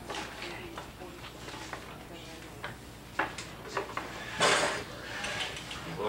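Clay being worked by hand on a potter's wheel: scattered soft knocks and scrapes over a steady low hum, with a short, loud rushing noise about four and a half seconds in.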